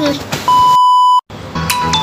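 A loud, steady electronic beep on one pitch begins about half a second in and lasts under a second. It cuts off abruptly into a moment of dead silence, over background music. It is an edit sound effect at a cut, not a sound from the cooking.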